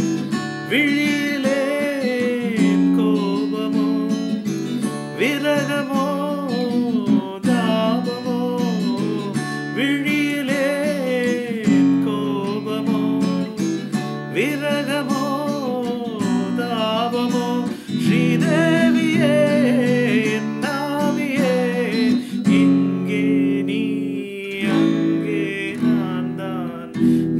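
A man singing a Tamil film song in a lilting melody while strumming chords on an acoustic guitar.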